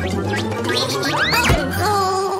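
Cartoon background music with bubbly, gurgling sound effects. About one and a half seconds in come quick rising whistle-like glides and a short thump.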